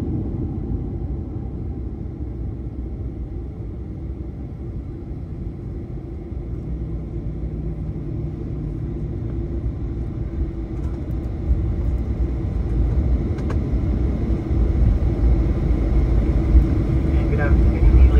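Airliner cabin noise during the landing rollout and taxi: a steady low rumble of engines and wheels on the runway with a faint steady hum, growing louder through the second half.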